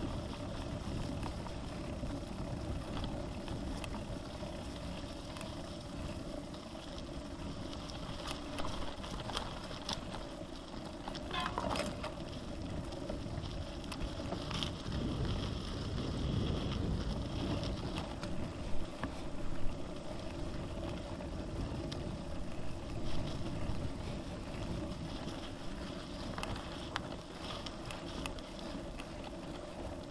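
Genesis Croix de Fer 10 gravel bike ridden along a dirt forest track, heard from a handlebar-mounted camera: a steady rolling rumble with rattle, and occasional knocks as it jolts over bumps, the sharpest about two-thirds of the way in.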